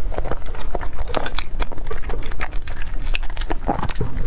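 Close-miked eating of soft layered cream cake: chewing and mouth sounds, with many small clicks and taps from a spoon and a plastic cake container.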